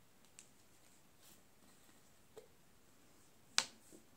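A few faint clicks as the cap of a small glass hot-sauce bottle is worked off, then one sharp click near the end, the loudest sound.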